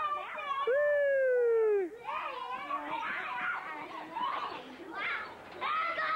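Young children yelling and shouting while playing. One long held yell about a second in falls slightly in pitch, then several children shout and call out over one another.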